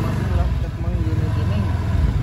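Vehicle engine running at low revs, a steady low rumble, with faint voices over it.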